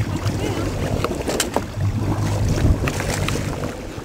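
A motorboat's engine running at idle, with water splashing as a wakeboarder drops off the back of the boat into the water, and wind on the microphone. A few sharp splashes stand out, the loudest about two and a half seconds in.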